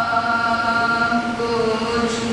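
A boy's solo voice chanting a hamd, an Islamic devotional poem in praise of God, into a microphone. He holds one long note, then steps down to a lower held note about one and a half seconds in.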